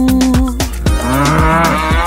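A cow's moo: one long wavering call starting about a second in, over an upbeat children's-song backing track with a steady beat.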